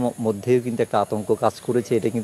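A man speaking Bengali in a steady run of words.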